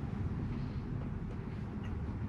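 Steady low rumble of tyres and road heard inside the cabin of a Tesla electric car rolling slowly, with no engine note.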